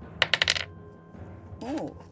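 Small glass glitter vials clinking, a quick run of about five light, ringing taps in under half a second.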